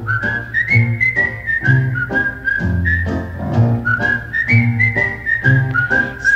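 Music: a whistled melody over a steady rhythm accompaniment, with a bass note about once a second.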